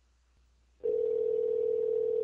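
Telephone ringback tone on an outgoing call: a single steady ring tone, about two seconds long, starting about a second in, as the line rings at the other end before it is answered.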